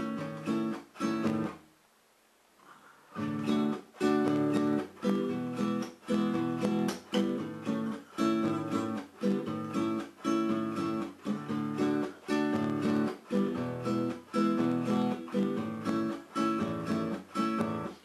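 Acoustic guitar strummed in a rhythmic accompaniment pattern on the chords A major, D major and E major. A few strokes sound, then a brief pause about two seconds in, and a steady strumming rhythm runs from about three seconds in.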